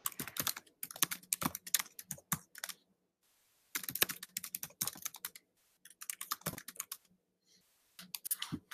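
Typing on a computer keyboard: quick runs of key clicks in bursts, with a pause of about a second about three seconds in.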